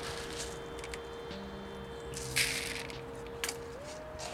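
Plastic scoop digging into a bucket of akadama bonsai substrate, a short gritty rustle of the granules a little past halfway, with a faint click shortly after. Quiet background music holds one steady note underneath, stepping up in pitch near the end.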